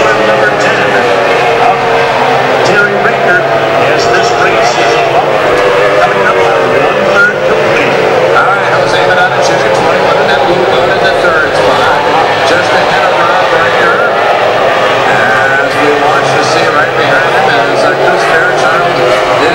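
Racing outboard engine of a Formula 1 tunnel-hull powerboat running hard, heard from on board. Its pitch wavers up and down as the boat runs and corners.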